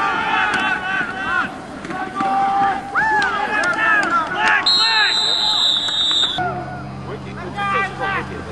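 Spectators and players shouting and cheering during a gridiron play. About halfway through, a referee's whistle is blown for a second and a half after the tackle, ending the play. A low steady hum comes in near the end.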